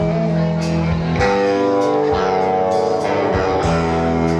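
A small rock band playing live without vocals: a semi-hollow electric guitar rings out chords over bass and drums. Cymbal or drum hits keep a steady beat about every half second or so.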